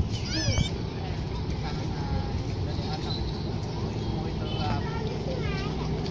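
Outdoor street ambience: a steady low rumble of traffic and wind, with background voices and a few short high-pitched calls, one just after the start and more around five seconds in.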